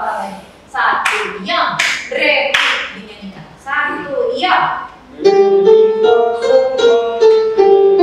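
A few sharp, hissy strokes with voices for the first five seconds, then from about five seconds in a loud run of steady held notes: an electronic keyboard playing a melody with choir voices.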